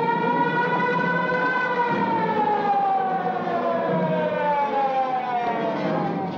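Police-car siren, one long wail that rises slightly at first and then slowly falls in pitch as it winds down.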